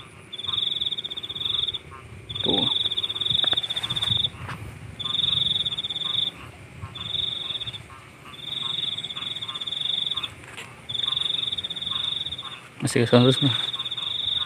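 A cricket's high, pulsed trill, repeating in bursts of one to two seconds with short gaps, about seven times, over a faint steady hum of other insects.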